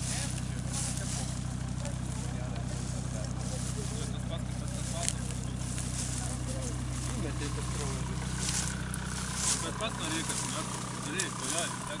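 Jeep Grand Cherokee engine idling steadily while the SUV sits stuck in deep mud, with people talking faintly in the background.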